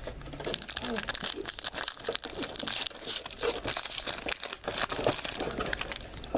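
Foil trading-card packs crinkling as they are handled and torn open, a dense crackling that runs throughout.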